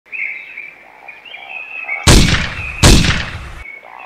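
Birds chirping, then two loud gunshots about a second apart in the middle, each trailing off before the sound cuts off abruptly.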